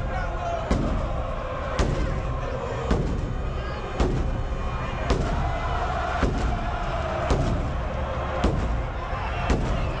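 Large ceremonial bass drum struck with a single stick at a steady pace of about one heavy beat every second, nine beats in all, over the noise of a big stadium crowd.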